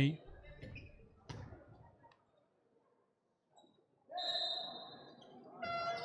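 A referee's whistle blown once about four seconds in to restart play. Before it there is a single short knock on the court, like a ball bounce.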